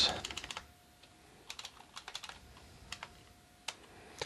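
Computer keyboard typing: quiet key clicks in short irregular bursts as a command is edited and typed.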